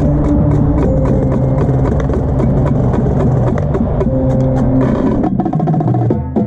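Indoor marching percussion ensemble playing: held chords in the low-middle range with drum strokes over them. About five seconds in, the tenor drums (quads) come in with a dense run of strokes.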